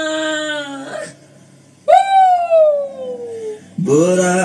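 A man's long held sung note bends down in pitch and breaks off about a second in. After a short pause comes a loud, siren-like wail that slides steadily down in pitch for about a second and a half. Music with singing starts just before the end.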